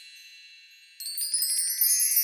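A high, shimmering chime sound effect of the wind-chime or magic-sparkle kind: the ringing tail of one fades away over the first second, then a new cascade of bright tinkling tones strikes suddenly about a second in, sweeping upward in pitch.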